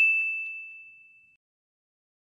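A single bright, bell-like ding sound effect. The high tone rings out and fades away within about a second.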